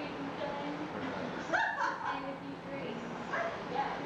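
People's voices talking and laughing in a room. A brief high-pitched yelp stands out about halfway through.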